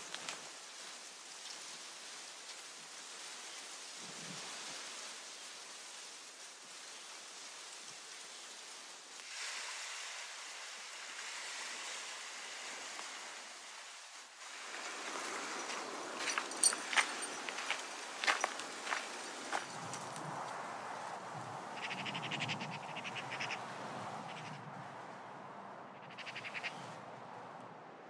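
Quiet open-air ambience at a calm seashore: a steady hiss that grows louder about halfway through, with scattered sharp clicks and a few short chirps in the second half.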